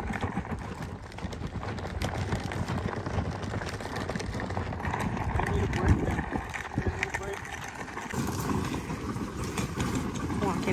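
Footsteps of several people walking at a steady pace on a packed gravel path, with faint indistinct voices.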